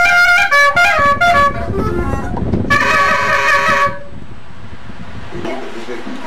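Caña de millo, the cane transverse clarinet of Colombian cumbia with its reed cut into the tube wall, playing a quick run of short notes, then one longer held note about three seconds in.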